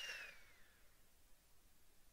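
Near silence, with a faint, thin whistle-like tone falling in pitch in the first moment.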